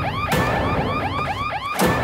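Electronic alarm siren from a street-pole emergency beacon, warbling in quick rising-and-falling chirps about five times a second. Two sharp hits cut across it, one near the start and one near the end.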